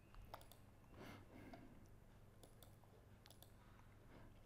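Near silence: room tone with a faint low hum and a few faint, scattered clicks.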